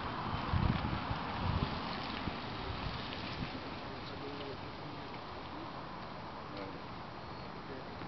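Outdoor ambience: a steady hiss of wind and distant street noise, with a few low rumbling bumps on the camera microphone in the first two seconds.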